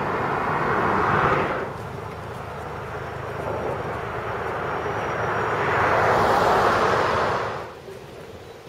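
Rushing noise of a passing vehicle. It is louder for the first second and a half, drops, then swells to a peak and cuts off suddenly near the end.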